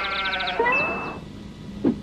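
A goat bleating: one call lasting about a second that drops in pitch at its end, followed by a short whoosh near the end.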